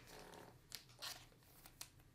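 Near silence, with a few faint clicks and rustles of trading cards and their packaging being handled.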